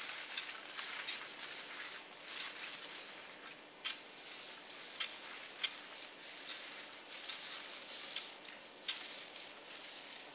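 Travel on snow with poles: a steady crackly hiss of snow with a few scattered sharp clicks, the loudest a little over halfway through.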